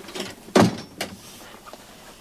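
A door being shut: a heavy thud about half a second in, then a sharp click.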